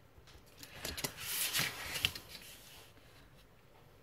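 A large sheet of scrapbooking paper rustling and sliding across a cutting mat as it is moved and turned, loudest a little after the first second. A few light clicks come before it and a sharp tap comes about two seconds in.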